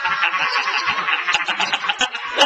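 A man laughing hard and uncontrollably, high-pitched, in quick repeated bursts.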